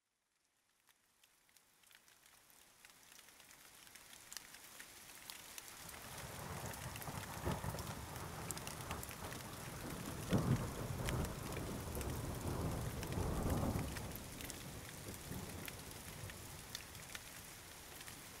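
Rain falling, with rolling thunder. It fades in from silence; the thunder's low rumble swells from about six seconds in, is loudest in the middle stretch and eases off near the end.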